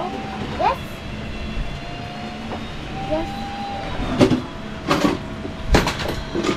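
Plastic toys clattering and knocking in a plastic storage bin as they are handled, several sharp rattles from about two-thirds of the way in, over a steady low rumble.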